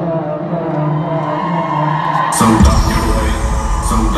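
Live arena concert music: a held chord for the first couple of seconds, then heavy bass and drums come in about two and a half seconds in.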